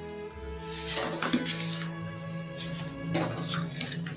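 Background music with a spoon clinking and scraping against a glass mixing bowl as a runny cake batter is stirred, with a few clinks about a second in and again after three seconds.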